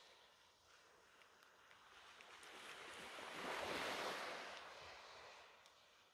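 Faint sea waves washing on the shore, one swell building to its loudest about four seconds in and then fading.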